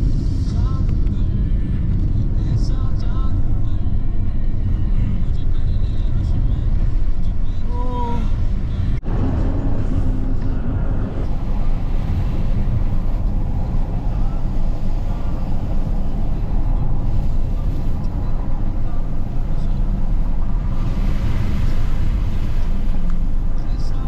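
Steady low rumble of a car's tyres and engine at road speed, heard from inside the cabin, with a few brief faint voices in the background.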